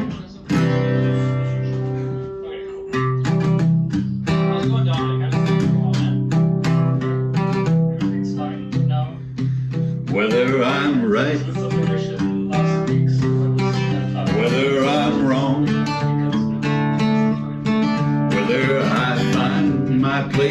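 Acoustic guitar strummed in a steady chord pattern, with a man's singing voice joining about halfway through.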